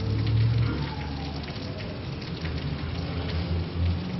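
A steady crackling hiss with a low hum underneath.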